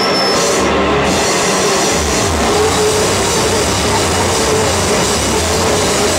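Live rock band playing loud and dense: electric bass, drums and cymbals in a small room, with a short high whistle right at the start.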